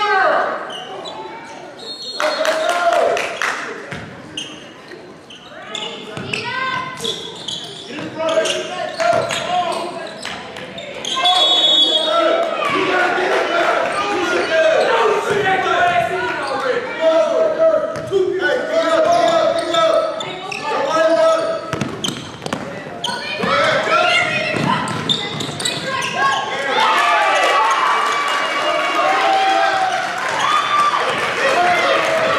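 Basketball bouncing on a hardwood gym floor during play, with players' and spectators' voices echoing through the large gym.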